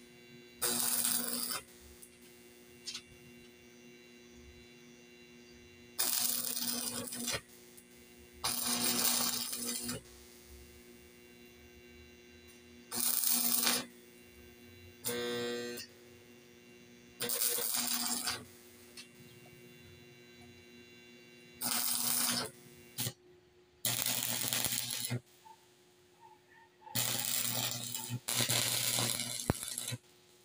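Electric arc welding: about ten short bursts of arc crackle, each lasting one to two seconds, as the joints of a wire-mesh cage are welded one after another to a steel frame. A steady low hum continues between the bursts.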